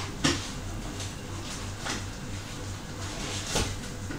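Three sharp knocks over a steady low hum: the loudest about a quarter second in, a weaker one near the middle and another near the end.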